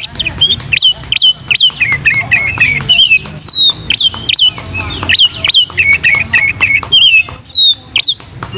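Oriental magpie-robin (kacer) singing hard and almost without pause: loud, clear whistled notes, some sweeping down from high, others repeated quickly in short rattling runs.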